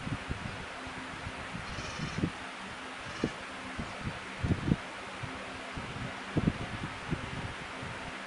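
Quiet room with a faint steady low hum and several soft, irregular knocks and taps of handling, typical of a makeup brush and powder palette being used.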